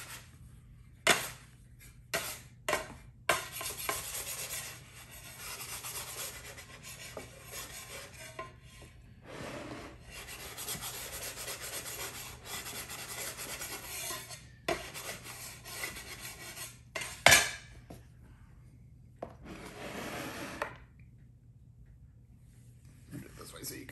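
Metal bench scraper scraping pie dough loose from the countertop while the dough is rolled onto a wooden rolling pin: long stretches of scraping and rubbing, broken by a few light knocks and one sharp knock about three-quarters of the way through.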